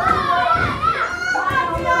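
Excited voices, children's among them, calling out and shouting without a break.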